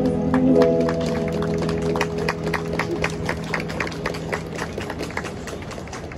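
The final held chord of a song fades out over the first second or two while a small street audience applauds. The hand claps come quick and irregular, about four or five a second, and thin out near the end.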